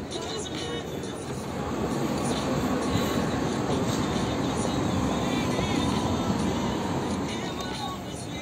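City street noise: a rumble of traffic that swells for several seconds in the middle and then eases, with faint voices of people around.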